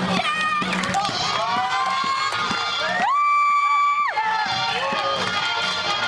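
Swing music with a crowd cheering and whooping. About halfway through, one high note is held for about a second.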